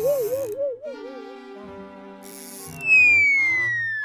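Cartoon orchestral underscore: held chords under a wavering, warbling melody line that fades out after about a second and a half. About three seconds in comes a loud whistle that slides steadily down in pitch, a cartoon falling effect.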